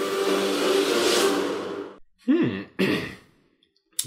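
A held chord of film-trailer music fades out about halfway through. Then a man makes two short voiced breaths that fall in pitch, like a sigh, followed by silence.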